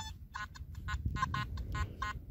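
Nokta Makro Simplex+ metal detector giving a rapid, choppy run of short beeps, about ten in two seconds, over a target that reads 04 on its screen. The jumpy signal is the kind the detectorist recognises as fencing wire lying on the surface.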